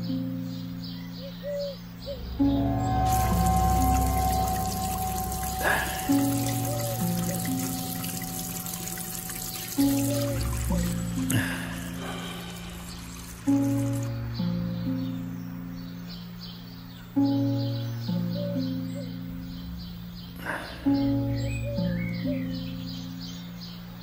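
Background music of slow, sustained chords struck every few seconds. From about three seconds in until about fourteen seconds, water runs from a tap into an outdoor wash basin as someone washes at it.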